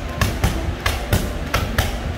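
Bare shins kicking heavy punching bags in a Muay Thai kick-for-kick drill: a quick, uneven run of sharp smacks, about three a second.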